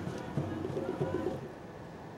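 A bird calling, short low-pitched calls repeated through the first second and a half, then a steady, quieter background.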